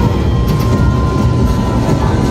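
Live band playing loudly through a club PA: a dense, droning passage with heavy bass and a held high tone, with no break in the sound.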